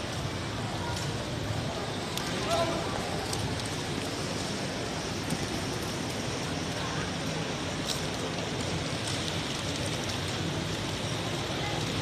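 Steady outdoor background noise with indistinct voices of people nearby and a few faint clicks.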